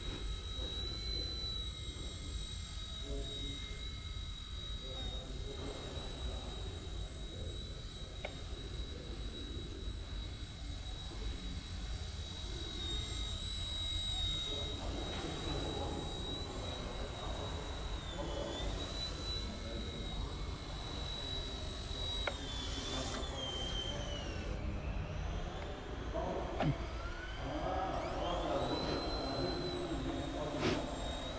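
Eachine E129 micro RC helicopter's electric motor and rotors running with a steady high whine that dips in pitch twice in the second half, then climbs back near the end as the throttle changes.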